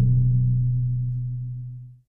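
The held low closing note of a logo jingle, one steady hum that fades away and stops near the end.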